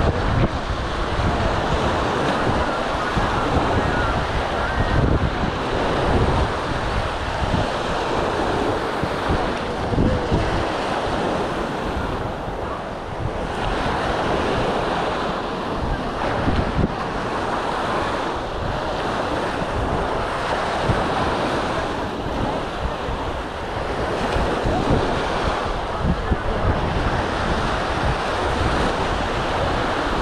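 Small waves breaking and washing up a sandy beach, with gusty wind rumbling on the microphone.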